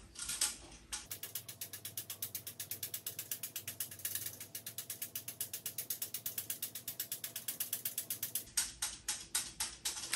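Sling psychrometer being whirled by hand: its thermometer frame clicks on the handle pivot in a rapid, even run of about eight or nine clicks a second, the twirling played back sped up.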